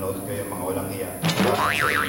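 Low voices, then a sudden sound a little past a second in, followed by a high pitch that wobbles up and down several times, like a boing.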